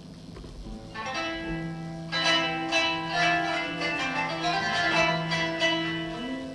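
Instrumental passage of Turkish Sufi music: a plucked string instrument plays quick, ringing notes over held low notes. The plucking comes in about a second in and grows louder and busier about two seconds in.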